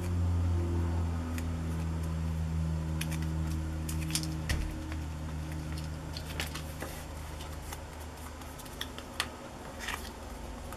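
Paper crinkling and light taps as a small cut-out paper ad is folded and pressed around a paper clip by hand, a few sharp crackles in the second half. Under it a steady low hum that gradually weakens.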